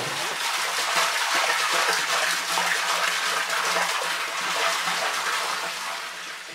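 Water pouring in a steady gush from a plastic jerrycan and splashing into a large water drum that already holds some water.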